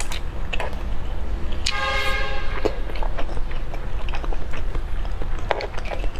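Close-miked chewing and mouth sounds with scattered small clicks. A brief pitched tone sounds about two seconds in and lasts under a second.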